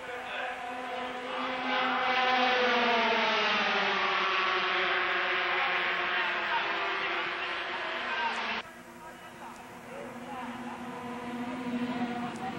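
Single-cylinder two-stroke 125cc GP racing motorcycles running flat out past in a group, their high engine note climbing and then falling away over several seconds as they go by. About eight and a half seconds in the sound cuts off suddenly to a quieter engine note of bikes further off.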